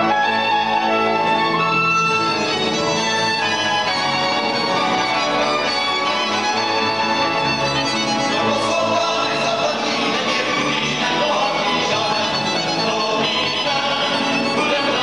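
Cimbalom band playing a Moravian Christmas carol: fiddles lead the tune over cimbalom and cello.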